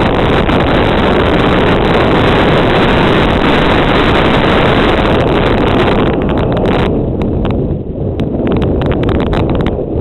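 Wind rushing over an old GoPro's microphone on a mountain bike descending a dirt trail at speed, mixed with the rattle of the bike over the bumpy ground. About seven seconds in the wind noise drops and a run of quick clicks and clatter from the bike stands out.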